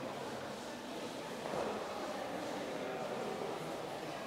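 Indistinct murmur of several people's voices, echoing in a large hall, with no music.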